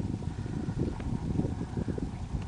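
Wind buffeting the microphone on open water, a low, uneven rumble that rises and falls, with a faint click about a second in.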